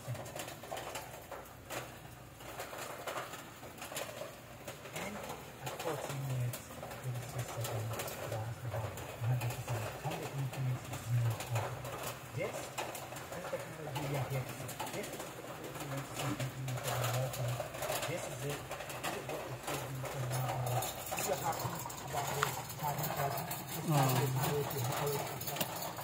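A bird cooing low in short, repeated phrases every few seconds, over faint indistinct voices.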